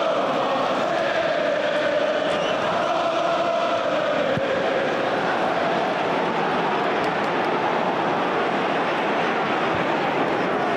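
Football stadium crowd, a steady roar of many voices with a drawn-out wavering tone running through it.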